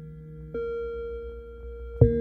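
Ambient electronic music from hardware synthesizers: sustained, bell-like synth tones over a low pulsing drone. A new note is struck about half a second in and rings on, slowly fading, and another is struck right at the end.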